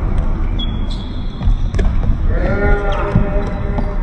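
A futsal ball being kicked and bouncing on a wooden sports-hall floor: a few separate knocks spread through, over a steady low rumble. There is a brief high shoe squeak about half a second in and a player's drawn-out shout about two-thirds of the way through.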